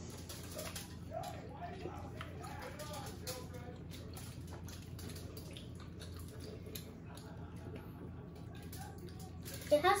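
Quiet mealtime sounds at a table: scattered small clicks and taps of hands, utensils and food, with faint low voices murmuring about a second to three seconds in.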